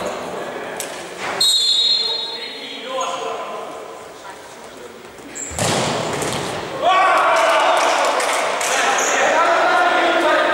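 Futsal ball play echoing in a sports hall: a short high referee's whistle about a second and a half in, a hard kick of the ball with a loud sharp thud about five and a half seconds in, then loud shouting voices of players cheering a goal from about seven seconds on.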